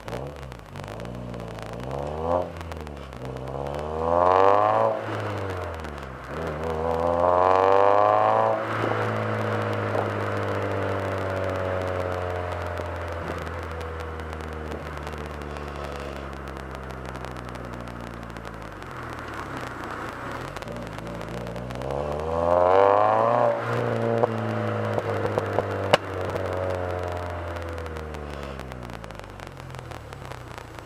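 Car engine heard at its titanium exhaust tip, idling and blipped up several times. The biggest rev, about eight seconds in, falls back slowly to idle, and there is a sharp click near the end.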